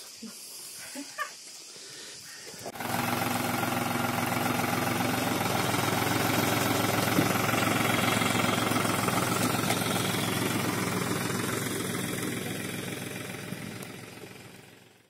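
Farm tractor engine running steadily, cutting in suddenly about three seconds in after faint outdoor sound, and fading out near the end.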